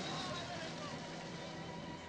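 Faint voices over steady background noise with a low hum.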